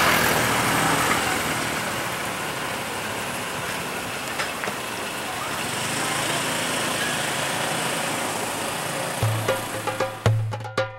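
Street traffic with vehicle engines, a pickup-truck taxi and motorbikes, passing over a steady hiss of road noise. Percussive music with drum and wood-block hits comes in near the end.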